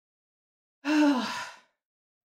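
A woman's voiced sigh, breathy and under a second long, starting about a second in, its pitch falling as it fades.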